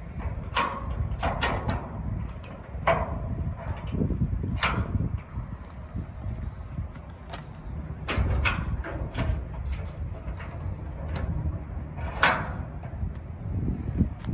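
Steel safety door lock pins being fitted back into the tailgate latches of a dump body: scattered sharp metal clicks and clanks over a steady low rumble.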